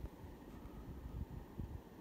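Faint low rumble with soft, irregular bumps: microphone handling noise as the camera is moved.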